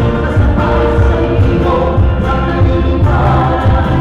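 Live folk-rock band playing a song, with voices singing together over acoustic guitars, electric bass and a drum kit keeping a steady beat.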